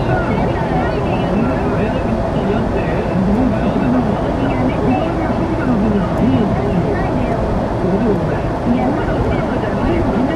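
Steady road and engine noise inside a moving car, with indistinct talking over it.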